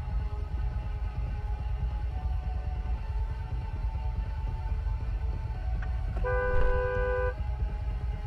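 A car horn sounds once, held for about a second, near the end, over the steady low rumble of an idling car. It is a warning honk at a car reversing into the horn-sounding car.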